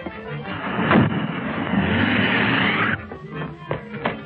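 Film soundtrack: music under a loud rushing noise that swells about a second in and cuts off suddenly about three seconds in.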